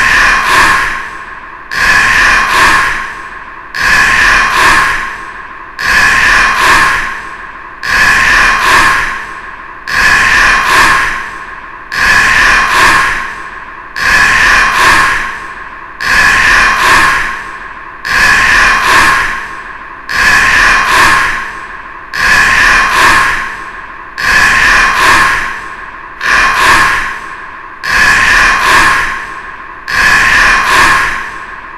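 One short sound looped over and over, about one every two seconds. Each repeat starts suddenly, holds two steady pitches and fades away before the next begins.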